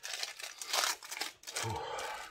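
Packaging crinkling and rustling as it is handled and opened, with a louder rustle just under a second in.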